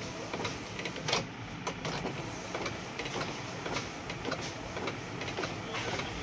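Epson L8050 six-colour inkjet photo printer printing: the print-head carriage shuttles back and forth with a steady run of small mechanical clicks and ticks, and a sharper click about a second in.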